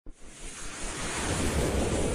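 Whoosh sound effect for an animated logo intro: a rush of noise that swells steadily louder from silence.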